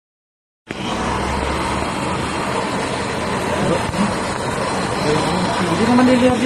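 Handheld gas torch burning with a steady, loud hiss as its flame is held on a fire cloth; the sound starts abruptly about a second in.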